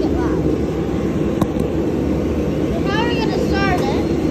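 A steady low drone, like a machine running, throughout. It is joined near the end by two short high-pitched voice calls.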